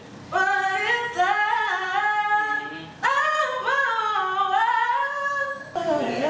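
A woman singing unaccompanied: two long phrases with sliding, bending pitch, with a short breath between them about halfway through.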